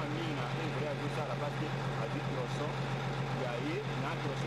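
Diesel engine of a wheel loader running steadily, a low even hum, with people's voices in the background.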